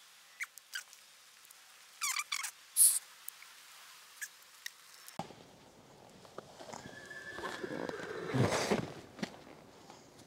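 A few faint high chirps and clicks, then from about halfway a rustling, scuffing noise that builds and peaks near the end. The mare is a little afraid of this noise.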